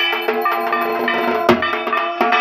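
Bell-metal plate (kansar) struck repeatedly with a wooden stick during puja worship, sharp strikes over a steady metallic ringing, with deeper drum-like thuds among them.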